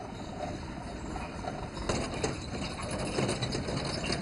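A light box truck driving slowly over a rough, potholed dirt road, its engine running and its body rattling, with a few sharp knocks about two seconds in.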